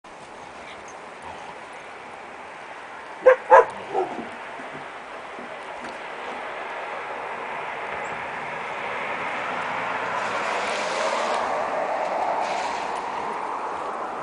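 Dogs play-fighting over a stick: three sharp barks in quick succession about three seconds in, then a long rough, noisy stretch that grows louder in the second half.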